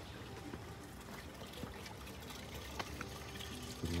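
Faint, steady trickle of running water.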